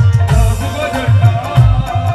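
Qawwali ensemble playing an instrumental passage: a harmonium-like melody over a steady, driving drum beat, with regular sharp strokes or claps keeping time.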